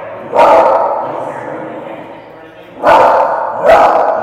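Dachshund–pitbull mix barking sharply at an approaching person: one loud bark about a third of a second in and two more near the end, each with a short room echo. The barking is fear aggression, as the trainer reads it: the dog is scared and barks to keep people away.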